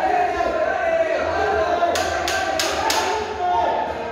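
People's voices calling out in a large hall, with four sharp smacks in quick, even succession, about a third of a second apart, around the middle.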